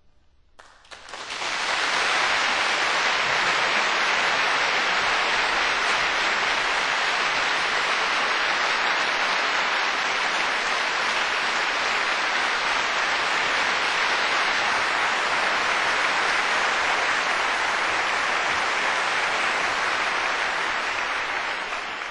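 Large audience applauding: the clapping swells in about a second in and then holds steady and full for about twenty seconds, easing off slightly near the end.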